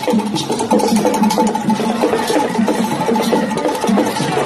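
Traditional festival percussion music: drums and a wooden knocking instrument playing a steady, repeating beat.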